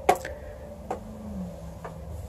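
Three light clicks about a second apart over a low steady hum, which dips slightly in pitch about halfway through.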